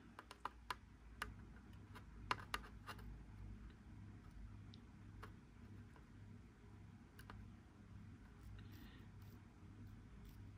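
Faint, scattered small clicks and taps, most of them in the first three seconds, as a soldering iron tip and solder wire touch the metal battery contacts in a plastic battery compartment, building up solder on a contact so it presses better against the batteries. A low steady hum runs underneath.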